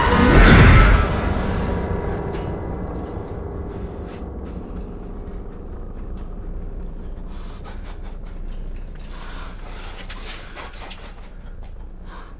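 Film sound design: a deep boom about half a second in, then a low rumbling drone with a few faint held tones that slowly fades away, with faint breathing.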